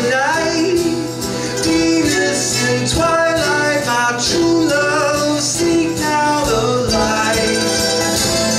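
Live acoustic folk-country band playing: strummed acoustic guitar, mandolin and hand percussion, with a man singing over it.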